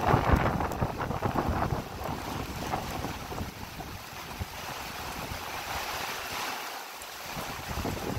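Storm wind of about 15 to 20 knots gusting against the microphone, buffeting hardest in the first two seconds, then settling into a steady rushing hiss of wind and rain.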